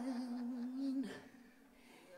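Female singer's voice holding a soft, low sung note that trails off and stops about a second in, leaving near silence.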